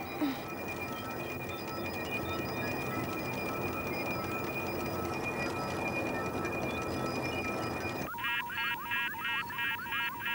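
A steady low sci-fi drone with faint held tones, then, about eight seconds in, rapid electronic computer beeping at about four beeps a second, cartoon sound effects.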